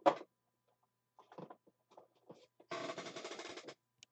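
Clear plastic card sleeve and holder handled close to the microphone: a short scrape right at the start, a few brief rustles, then about a second of dense crinkling near the end.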